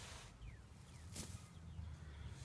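Faint scraping of a small hand trowel cutting into the sandy soil of an ant mound, with one brief sharper scrape about a second in, over quiet outdoor background.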